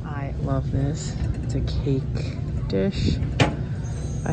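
Short stretches of indistinct voice over a steady low rumble, with one sharp click about three and a half seconds in.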